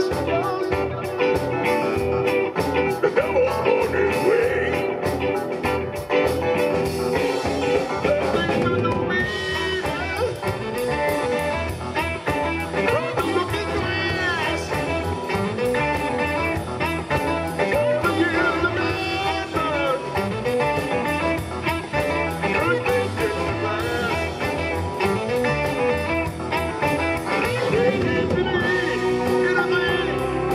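Live blues band playing amplified, with electric guitar, bass guitar and keyboards over a steady beat.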